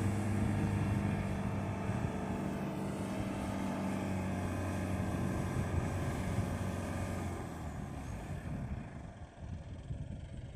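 Mahindra Getaway pickup's engine running steadily under load as it drives through soft sand. The engine note fades after about seven seconds as the truck pulls away.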